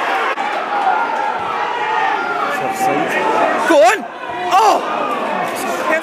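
Football supporters' voices: overlapping shouting and chatter from the crowd at the pitch side, with two loud rising-and-falling shouts about four seconds in.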